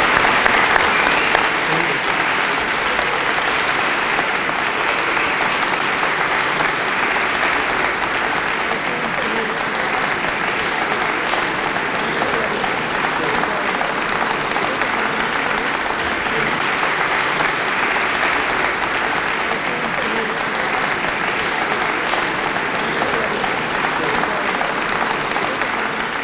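Sustained applause from a large seated audience, loudest in the first second or so and then holding steady.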